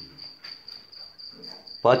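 A cricket chirping: a thin, high, evenly pulsed trill that keeps going without a break. A man's voice cuts in near the end.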